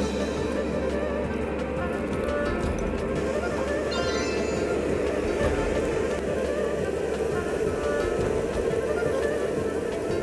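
Marinated shredded pork frying in hot oil in a wok, a steady sizzle, with background music over it.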